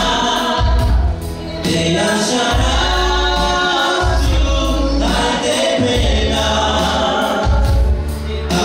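A woman singing a gospel worship song into a microphone over electronic keyboard accompaniment, with a heavy bass line moving in blocks of notes.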